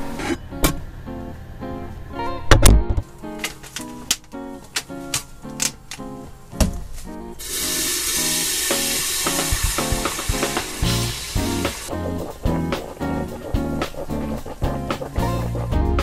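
Background music with plucked guitar notes throughout, a sharp knock about two and a half seconds in, and from about seven and a half seconds a steady rush of water pouring from a large plastic jug for about four seconds.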